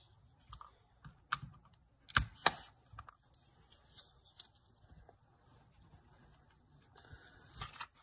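Sparse clicks and knocks of small objects being handled on a workbench, the loudest a pair of knocks about two seconds in; near the end, a small cardboard box being picked up.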